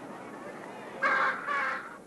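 Two harsh squawks from a macaw, back to back about a second in.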